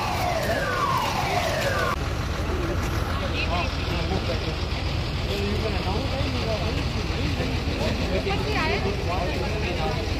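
A siren sounding in repeated falling sweeps, each about a second long, that cuts off abruptly about two seconds in. After it, many people talk at once over a steady low rumble.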